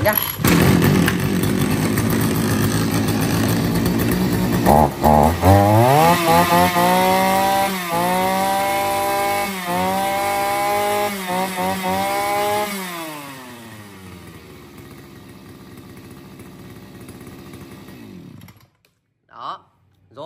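Two-stroke engine of a G543 (Husqvarna 543-type) brush cutter with a 41 mm bore, just pull-started and running. About five seconds in it is revved up to a steady high-pitched wail with a few brief dips. Near 13 s the throttle is released, it drops back to a quieter idle, and it cuts off suddenly near the end.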